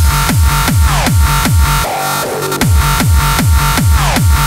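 Fast UK bounce dance music from a DJ mix: a heavy kick drum on every beat, about two and a half beats a second, with a synth line over it. The kick drops out briefly about two seconds in, then comes back.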